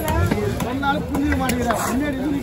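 Fish being chopped with a large knife on a wooden log chopping block: several sharp knocks as the blade strikes through the grouper flesh and bone into the wood, with people talking underneath.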